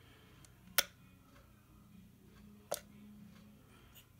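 Two sharp clicks about two seconds apart from the small metal push buttons of an N1201SA handheld RF vector impedance analyzer, pressed while it is being switched on.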